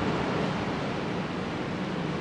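Steady hiss of background room noise with a faint low hum, without singing or music.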